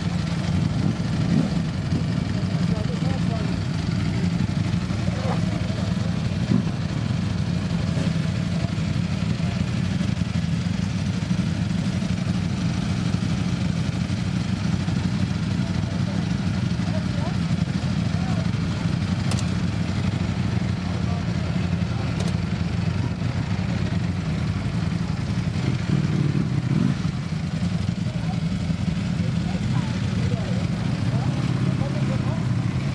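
Several Ducati motorcycles idling together, led by a Panigale V4 S's V4 engine: a steady idle with no revving. Crowd chatter is heard faintly underneath.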